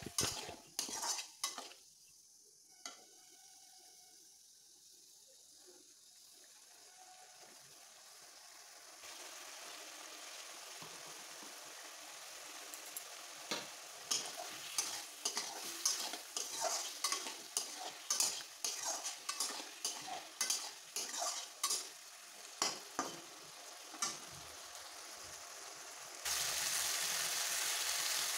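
Metal spatula stirring and scraping potato and raw banana pieces around an aluminium kadai while they sizzle in oil with ground spices, the masala being fried until the oil separates. After a quiet few seconds the sizzle builds from about nine seconds in, with rapid clicking scrapes of the spatula on the pan, and turns suddenly louder about two seconds before the end.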